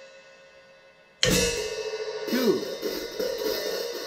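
Hi-hat cymbals held open by a drop clutch, struck with a drumstick: an open, ringing hit about a second in, then a continuous sizzling wash with quick ticks from about two seconds in.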